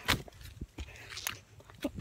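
Footsteps moving quickly through undergrowth, several uneven steps with leaves and plants rustling against legs.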